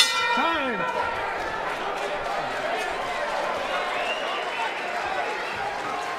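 Boxing ring bell struck once at the end of the round, ringing out and fading over about a second. Crowd noise and shouting carry on underneath.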